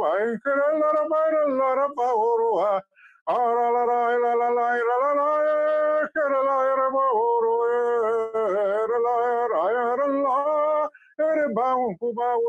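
A man singing a slow, chant-like prayer, holding long notes that glide up and down, with a brief pause for breath a little before the three-second mark.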